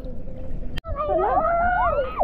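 Several people's voices calling out together in long, drawn-out cries that glide up and down. They start after an abrupt cut a little under a second in.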